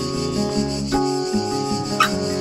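Steel-string acoustic guitar played fingerstyle, plucked notes ringing and changing about a second in, over the steady high buzz of cicadas. A brief squeak of fingers sliding on the wound strings comes near the end.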